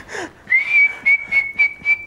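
A person whistling one steady high note, starting about half a second in and held for about two seconds.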